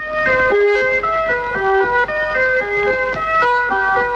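Instrumental music: a bright, quick melody of short notes stepping up and down in pitch, starting suddenly.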